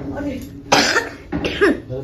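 Short, sharp vocal bursts from people, with a loud one a little before a second in and more in the second half.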